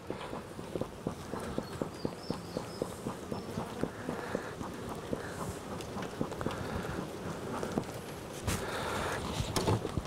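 Beekeeper's bellows smoker being worked over an open hive, giving several short puffs of smoke to calm the bees. Irregular small clicks and knocks of handling run throughout.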